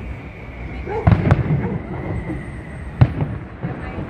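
Aerial firework shells bursting: a cluster of bangs about a second in, then one sharp bang at about three seconds.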